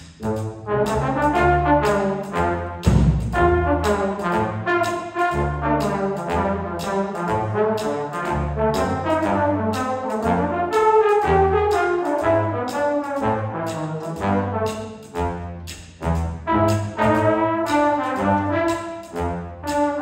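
Jazz big band playing, with the trombone section featured over saxophones, a walking bass line and drums keeping a steady beat.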